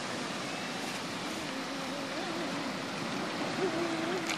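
Steady wash of sea surf. Across the middle a faint, drawn-out voice wavers up and down in pitch.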